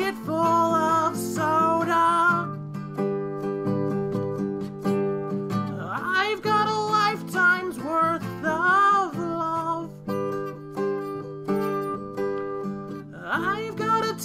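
An original song: a man sings phrases over a steady instrumental accompaniment. The voice sings at the start and again in the middle, the accompaniment carries on alone between phrases, and the voice comes back near the end.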